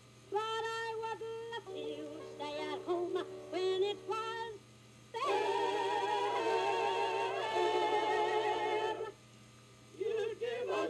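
A singing voice from a Columbia record played on a turntable: a few short sung phrases, then a long held note with vibrato from about five seconds in to about nine seconds, with a faint steady hum underneath.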